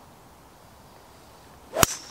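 Golf club swung down and striking a ball off an artificial tee mat: a short rising swish of the downswing, then one sharp crack of impact near the end.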